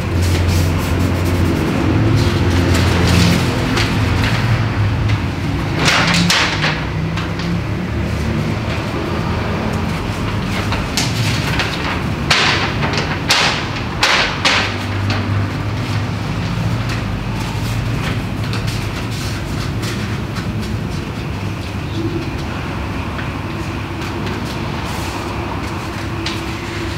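Low, droning background music with held bass notes that change in steps. Several short rushing noises come in about six seconds in and again around twelve to fourteen seconds.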